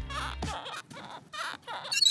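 Soft, wordless laughter from a person, followed near the end by a brief scratchy rasp as a numbered stone disc is pulled off a wooden board.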